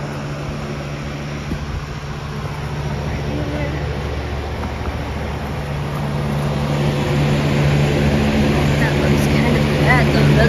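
Steady motor hum with several fixed pitches, growing louder over the last few seconds.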